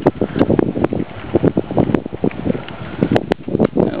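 Wind buffeting the microphone, with irregular rustling and knocking crackles.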